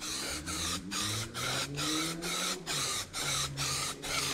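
Aerosol can of rubber-coating spray paint hissing in a quick string of short bursts, about three or four a second, as it is sprayed onto plastic panels.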